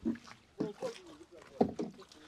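Water splashing and sloshing in short irregular strokes as a person wades into a shallow flooded pond, with faint voices.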